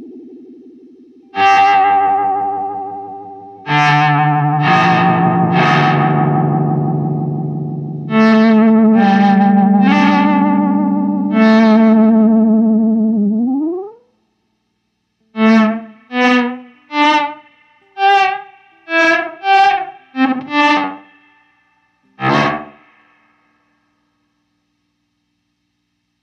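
Electric guitar played through a Hologram Electronics Infinite Jets Resynthesizer pedal: distorted chords held in a long, even sustain, the last one gliding upward in pitch and cutting off abruptly about two-thirds of the way through. After that comes a quick run of short, choppy notes and one final stab.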